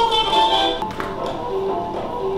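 A record of horn-led music playing on a portable suitcase gramophone. A couple of sharp clicks just before a second in come from the tonearm being handled.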